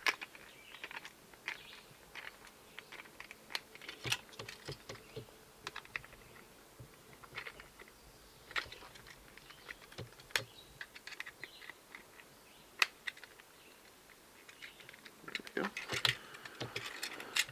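Faint, irregular small clicks and taps of a screwdriver working a small screw on a trolling slide diver, along with the diver's parts being handled, with a few sharper clicks scattered through.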